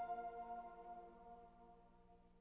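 The final sustained chord of an ambient worship arrangement, electric guitar through reverb and delay, ringing out and slowly dying away with no new notes struck.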